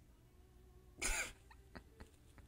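A man coughs once, sharply and briefly, about a second in, followed by a couple of faint clicks.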